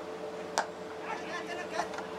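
A single sharp crack about half a second in, then faint voices and chatter over a steady hum.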